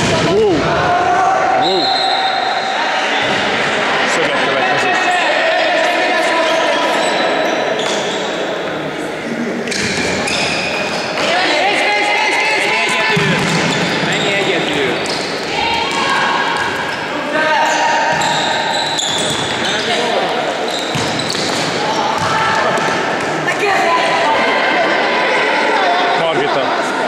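Sports shoes squeaking repeatedly on a sports-hall floor during an indoor football game: many short, high squeals come one after another. The ball is kicked and bounces, and players' voices are heard, all echoing in the large hall.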